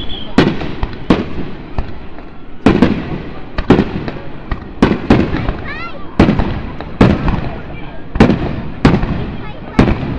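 Fireworks display: aerial shells bursting about once a second, each a sharp bang followed by a trailing rumble.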